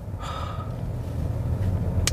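Low, steady cabin rumble of a Chevrolet Malibu on the move, slowly growing louder. A short breath is heard near the start.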